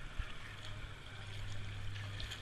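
Kayak paddling: steady washing and splashing of water from the paddle strokes and the hull moving through the water, under a constant low hum. There is one dull knock just after the start.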